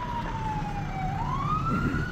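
Police car siren wailing: one slow sweep whose pitch falls until about a second in, then rises again.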